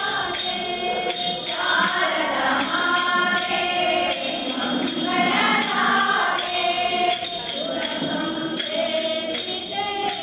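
A group of women singing a devotional bhajan together in unison, over a steady percussive beat about twice a second.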